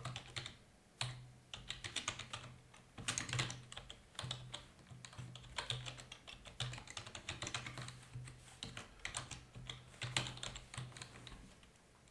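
Typing on a computer keyboard: bursts of quick keystrokes with short pauses between them.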